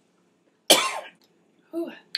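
A person coughs once, sharply, a little under a second in, having breathed in wrong while swallowing a spoonful of hot sauce. A short throaty vocal sound follows near the end.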